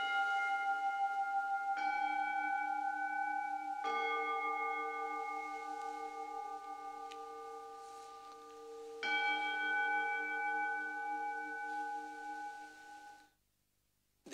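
Altar bells struck four times at the elevation of the host after the words of consecration, each stroke ringing on long with several clear tones. The ringing cuts off abruptly near the end.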